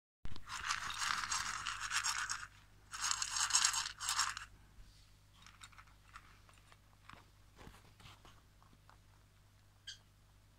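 Rustling and scraping handling noise, in three loud bursts over the first four and a half seconds, then only faint scattered clicks.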